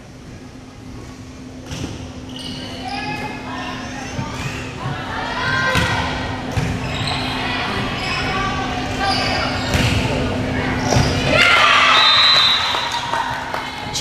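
Volleyball rally in an echoing school gym: the ball thumps several times as it is hit, while spectators' voices and shouts build into cheering near the end as the point is won.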